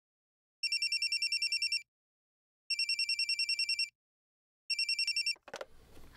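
Telephone ringing with a rapid warbling electronic trill: two full rings about two seconds apart, then a third cut short as the phone is picked up with a click.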